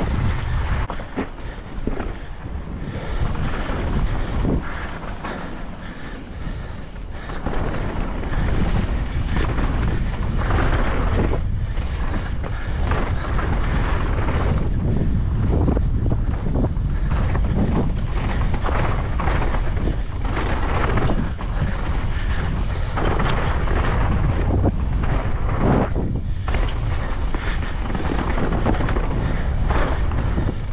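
Wind buffeting the microphone of a mountain bike's action camera on a fast singletrack descent, over the tyres rolling on dirt. Frequent short knocks and rattles come from the bike over bumps and roots.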